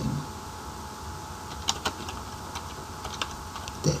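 Computer keyboard typing: a handful of scattered key clicks as a short phrase is typed, most of them in the second half, over a faint steady hum.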